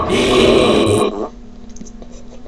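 A loud, rough, guttural growl from the cartoon soundtrack lasting just over a second, which then cuts off to a faint steady hum.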